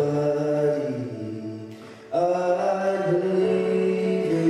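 A young man singing solo into a microphone, holding long drawn-out notes; the first note fades away about halfway through and a new one begins sharply just after.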